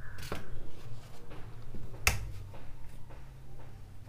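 Plastic pattern rulers clicking and tapping on the cutting table as they are moved and set down, with one sharp click about two seconds in.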